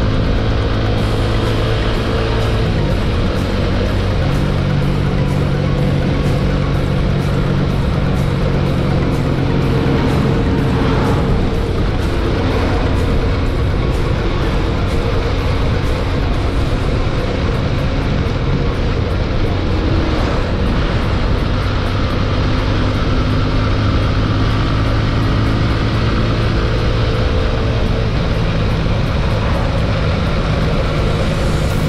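Steady rush of riding noise, wind and engine, from a TVS Apache 200 motorcycle cruising along. Background music with held notes that change every few seconds plays over it.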